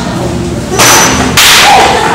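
Two loud swishing bursts of noise close to the microphone, each about half a second long, the first about a second in and the second right after it.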